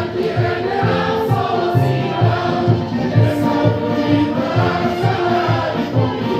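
A group of voices singing a folk song together over instrumental music with a steady, pulsing bass beat.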